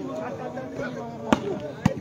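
Two sharp smacks of a volleyball being struck by hand, about half a second apart, over a murmur of voices.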